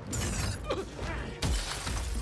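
Glass shattering in a loud crash with falling debris, then a heavy impact about one and a half seconds in.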